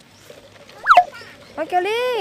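A brief, sharp high squeal about a second in, then a high-pitched voice calling out with rising and falling pitch near the end.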